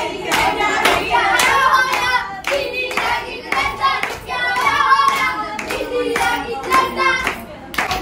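Punjabi giddha: a group of women clapping their hands in a steady beat, about two claps a second, while singing together over it.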